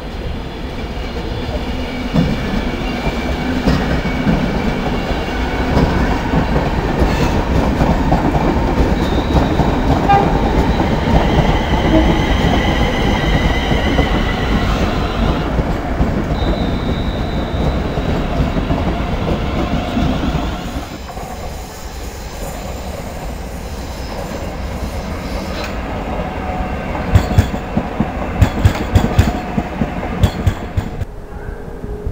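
Electric multiple-unit trains moving slowly through the station throat with a steady rolling rumble and high steady squealing tones over it. The rumble eases about two-thirds of the way through. Near the end a second train's wheels clack sharply over rail joints and pointwork.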